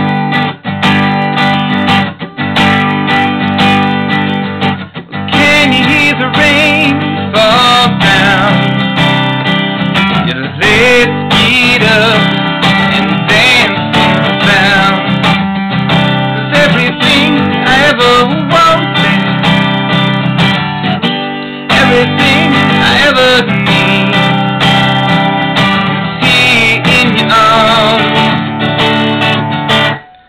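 Acoustic guitar strummed in a steady rhythm, starting suddenly and dropping out briefly about two-thirds of the way through.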